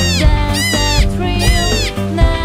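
Children's song music with a steady beat, and three meows over it, each rising then falling in pitch.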